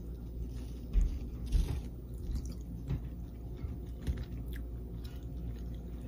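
A person chewing a bite of scallion pancake close to the microphone, with a few small knocks and clicks, the loudest about a second in and again half a second later.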